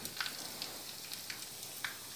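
Garlic and curry leaves sizzling in ghee in a small kadai on a gas flame, a steady, fairly faint hiss with a few light ticks.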